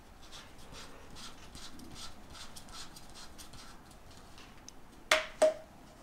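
Plastic handle being screwed onto the hand-pump shaft of an oil extractor: faint rubbing and light ticking of plastic parts turning against each other. About five seconds in come two sharp plastic clicks, a third of a second apart, the loudest sounds here.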